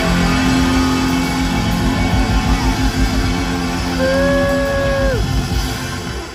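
Live rock band playing loud with electric guitars, bass and drums, a held high note that bends down and drops away about five seconds in, the music starting to die away at the end.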